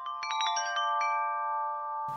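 Tuned metal chimes struck in a quick, irregular run, several clear notes ringing on and overlapping; the strikes thin out in the second half.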